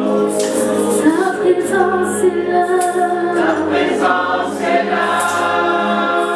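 A small gospel worship team of female and male voices singing a worship song together into microphones, with keyboard accompaniment.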